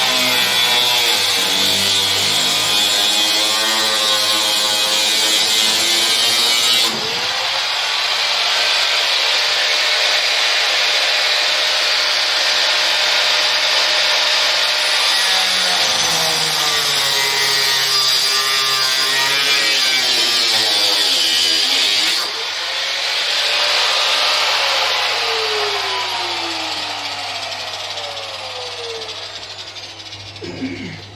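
Angle grinder cutting through steel tubing, its motor pitch dipping and rising as the disc bites. The sound changes suddenly about a quarter of the way in and again past two-thirds, and near the end the grinder winds down with a falling pitch.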